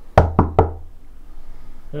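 Three quick knocks on a closed interior door, evenly spaced about a fifth of a second apart, each with a dull low thud.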